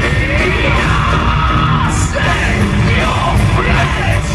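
Live heavy metal band playing loud, with distorted electric guitars, bass and drums under a vocalist's shouted singing.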